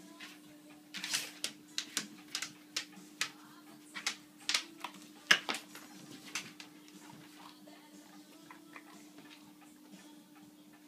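A series of irregular sharp clicks and knocks, about a dozen over five seconds and then thinning out, over a steady low hum.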